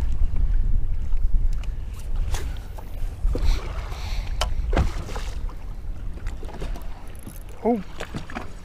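Wind buffeting the microphone on an open boat deck, a steady low rumble that is loudest in the first few seconds, over choppy water. Scattered sharp clicks and knocks come from handling the spinning rod and reel while casting and retrieving.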